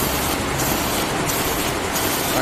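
ISEEF ZF-510 automatic envelope making machine running: a steady mechanical clatter, with a high hiss that swells and fades in a regular cycle, about three times in two seconds.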